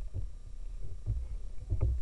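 Low rumble with a few soft knocks, the strongest near the end: a paddler and his gear shifting on an inflatable boat, picked up through the boat-mounted camera.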